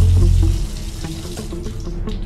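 A loud, steady rushing noise, with a heavy low thump as it begins, over background music.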